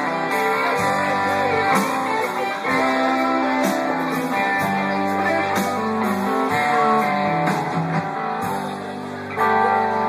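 Live band playing: strummed acoustic guitar and electric guitar over bass, keyboard and drums, with a line that bends in pitch. The band swells louder just before the end.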